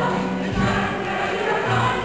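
A chorus of young boys' and girls' voices singing together in a stage-musical number.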